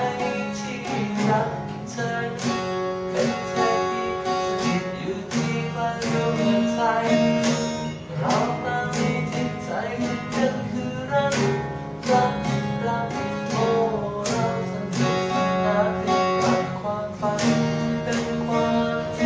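Two acoustic guitars strummed together in a steady rhythm, with a man singing a slow Thai pop ballad over them.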